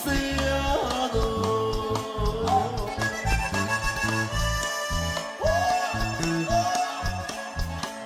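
Norteño corrido music: an accordion plays a melodic instrumental passage, with notes sliding into one another, over a bass line that pulses in a steady beat.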